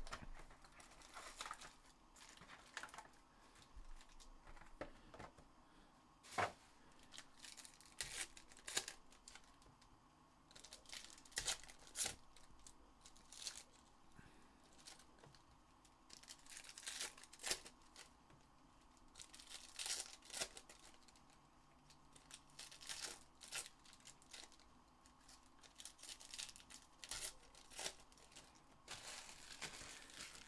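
Trading-card packs being opened by hand: foil pack wrappers torn and crinkled in quiet, short rustling bursts scattered throughout.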